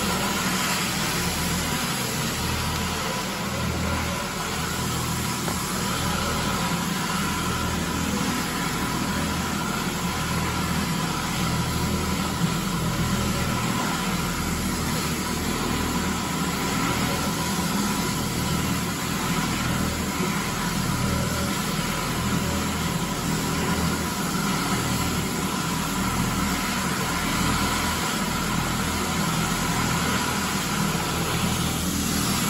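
Advance SC750 walk-behind floor scrubber running while it cleans: its vacuum and brush motors make a steady noise with a faint, even whine.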